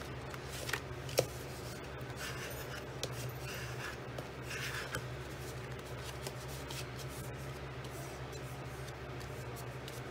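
Green cardstock being folded and creased back and forth by hand along a score line: soft, irregular paper rubbing and rustling, with two sharp clicks in the first second or so and a brief louder rustle about halfway through.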